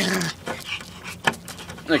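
A small puppy panting, with a short pitched sound at the start and a few sharp clicks in the middle.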